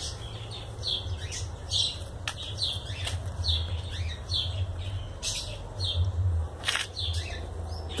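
Small birds chirping: short, high chirps repeating every half second or so, over a steady low rumble.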